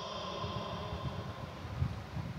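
Low, steady rumbling background noise with a faint steady hum, the room tone of a large space.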